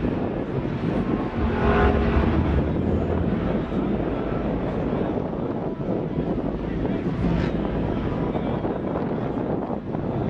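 Outdoor ambience of a busy parking lot: a steady low rumble of vehicles with wind on the microphone, and voices in the background.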